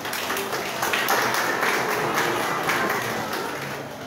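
Audience applauding, swelling about a second in and thinning toward the end.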